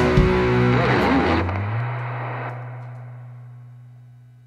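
Distorted electric guitars and drums ringing out the final chord of a rock song, then cutting off about a second and a half in. A single low note lingers afterwards and fades away steadily.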